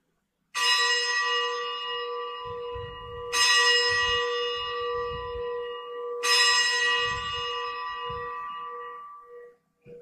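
A bell struck three times, about three seconds apart, each stroke ringing out bright and fading slowly, with a low wavering hum lingering as it dies away: the consecration bell rung at the elevation of the host during Mass.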